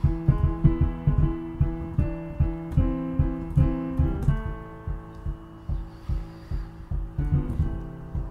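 Instrumental passage of a folk song: acoustic guitar playing over a steady low beat, with the guitar's notes changing about halfway through.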